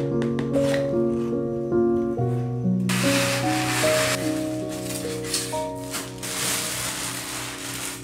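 Soft background music with sustained notes. From about three seconds in, a few seconds of rustling and scraping as a foam insert is slid out of a cardboard box and the lamp is pulled from its packaging.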